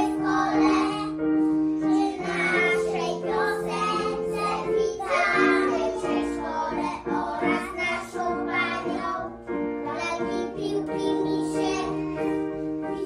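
A group of young children singing a song together over instrumental backing music with long held notes.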